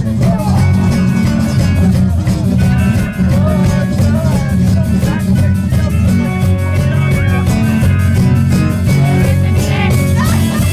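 A rock band playing live: loud electric guitar, bass and a steady drum beat, with singing over it.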